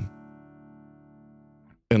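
An electric guitar chord ringing out through a tube amp, fading slowly, then damped by hand shortly before two seconds.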